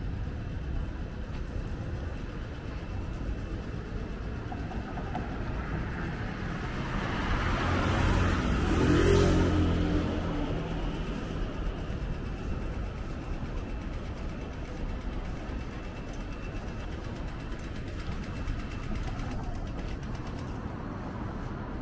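City street traffic with a steady hum, and one motor vehicle passing close by: it builds, goes past about nine seconds in, and fades away.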